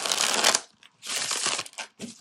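A gold-edged tarot deck riffle-shuffled twice, each riffle a quick fluttering rush of card edges: one right at the start and a second about a second in.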